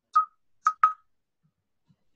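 Three short electronic beeps at the same middle pitch: one, then a pause, then two in quick succession.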